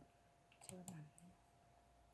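Near silence broken by two faint, sharp clicks close together a little under a second in.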